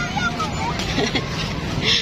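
Children's voices talking over steady street traffic noise.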